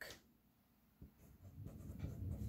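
Faint strokes of a Sharpie felt-tip marker writing on paper, beginning about a second in.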